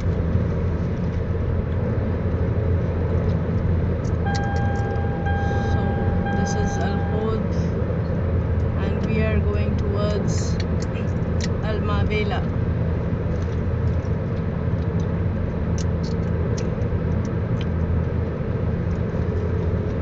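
Steady road and engine rumble inside a car's cabin while driving at expressway speed. A few seconds in, a steady single-pitched tone sounds for about three seconds.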